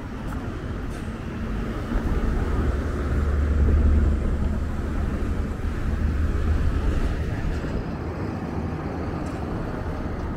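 Street traffic with a motor vehicle passing close by: a low rumble swells from about two seconds in, peaks around four seconds, and fades away by about seven seconds.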